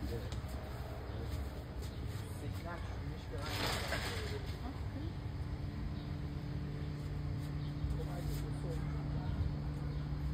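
Outdoor garden ambience with faint, indistinct voices and a steady low hum. A brief rustle of leaves and branches comes about three and a half seconds in, as the fruit tree's branches are pulled to reach the fruit.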